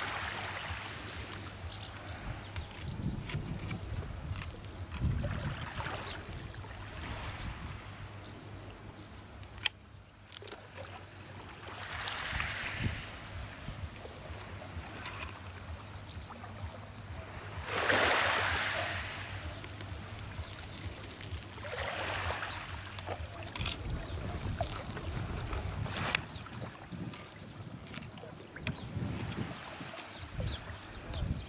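Small waves washing onto a pebble beach, each wash a swell of hiss lasting a second or two and returning every few seconds, the biggest about two-thirds of the way through. A steady low rumble of wind on the microphone runs underneath.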